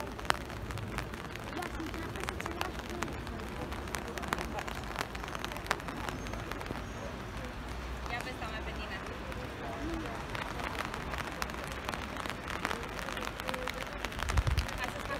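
Light rain with scattered drops ticking close by, a few people talking at a distance, and some low wind rumble on the microphone.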